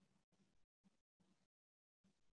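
Near silence: faint room noise that cuts in and out in short patches.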